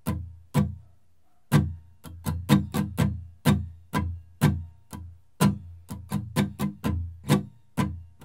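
Steel-string acoustic guitar strummed in a steady pulse of mostly downstrokes with occasional upstrokes, about three strums a second, with a short pause about a second in.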